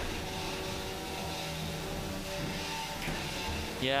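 Spinning weapons of two 3 lb combat robots whining steadily, several held tones that shift in pitch as the robots manoeuvre.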